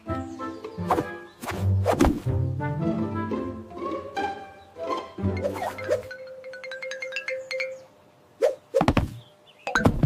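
Cartoon background music with several loud thunks: one about a second in, one about two seconds in, and three close together in the last two seconds.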